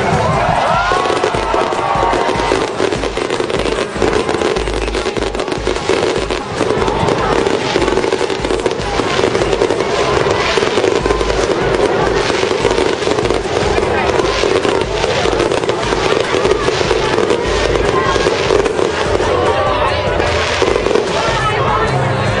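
Fireworks display going off: a rapid, continuous run of crackles and bangs from ground fountains and aerial bursts, with crowd voices and music underneath.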